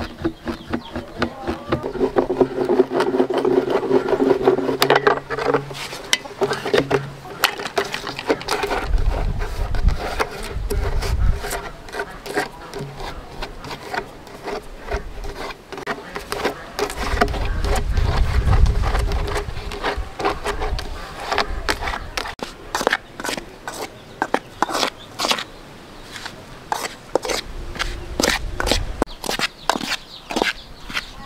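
A knife scraping and cutting into PVC pipe in many short, repeated strokes. A flying insect buzzes at times, most clearly in the first few seconds, and there are a few low rumbles.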